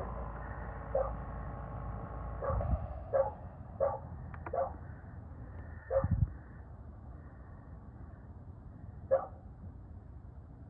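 A dog barking in short single barks, about seven of them spread unevenly, over a low hum that drops off about six seconds in.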